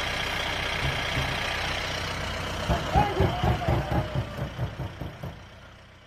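Safari jeep engine running steadily; a little under halfway through, a rapid run of irregular thumps and knocks starts up and lasts a few seconds, then the whole sound fades out.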